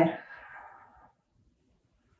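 The last word of a woman's spoken instruction trailing off, then near silence: room tone.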